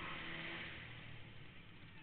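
Motorcycle engine heard through a helmet camera, running at a steady pitch while its sound fades away.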